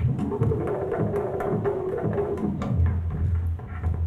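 A looped sample in a Make Noise Phonogene granular looper on a Eurorack modular synthesizer, played backwards and at a changed speed: clicky percussive hits over a low bass, with pitches sliding and a fast low pulsing near the end.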